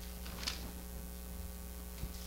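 Steady electrical mains hum in the sound system, with a faint brief rustle about half a second in.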